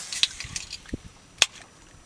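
A few sharp clicks and knocks, the loudest about one and a half seconds in.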